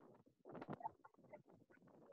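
Near silence, with a few faint, short clicks and rustles between about half a second and a second and a half in.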